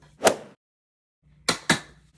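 Two quick sharp knocks, about a fifth of a second apart, from hands handling a plastic storage tote, after a stretch of dead silence at an edit.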